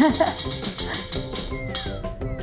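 Prize wheel spinning, its pointer flapper clicking rapidly against the pegs, about ten clicks a second, stopping about one and a half seconds in. Background music plays under it.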